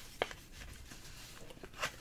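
Faint rustling of a cardboard trading card being slid into a clear plastic sleeve, with a single short click a fraction of a second in.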